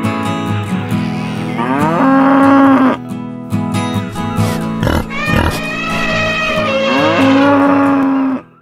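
Cow mooing twice, each moo sliding up and then held, over background guitar music.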